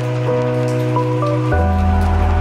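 Garlic sizzling steadily in hot oil in a frying pan, a fine crackling hiss, under background music of held chords that change about one and a half seconds in.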